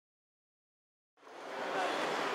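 Silence, then about a second in a steady background din of an indoor arena fades in: an even noise with no distinct events.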